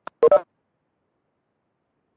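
A faint click, then a brief two-note electronic chime from the video-call app, all over within half a second.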